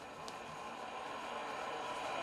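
Motorized skein winder running, its motor and turning swift making a steady hum that grows louder as it speeds up, with two faint clicks near the start.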